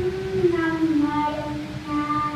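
A young girl singing into a handheld microphone, holding one long final note that slides slightly down in pitch about halfway through.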